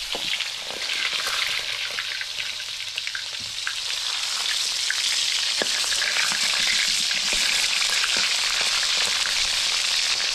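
Fish frying in hot oil in a wok over a wood fire: a steady crackling sizzle that grows louder about halfway through.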